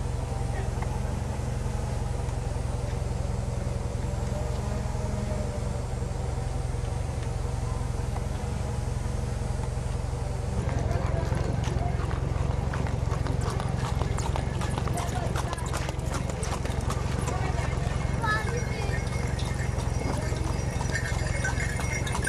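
Outdoor street sound with a steady low rumble and some voices; from about halfway through, a rapid, continuing clatter of hooves and cart as a horse-drawn cart passes close by.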